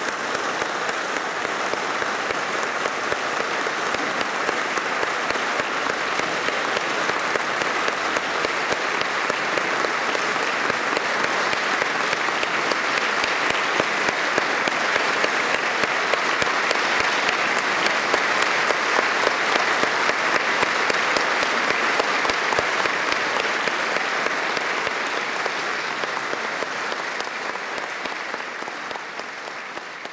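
Concert audience applauding steadily. The applause swells slightly through the middle and fades away near the end.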